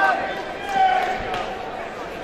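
Spectators' voices calling out around a boxing ring, with a few dull thuds about a second in.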